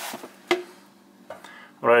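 A single sharp click about half a second in and a fainter one a little later, against near-quiet room tone.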